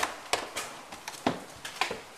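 Footsteps climbing bare stairs: a quick run of sharp footfalls, about six in two seconds.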